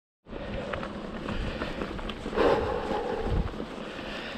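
Mountain bike rolling along a dirt track, heard from a handlebar-mounted camera: tyre rumble over the ground with small rattles and knocks from the bike, and wind buffeting the microphone. The noise swells for a moment about two and a half seconds in.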